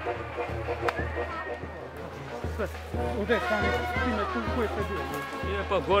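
Brass band playing a tune over a steady pulsing low beat, with people talking around it.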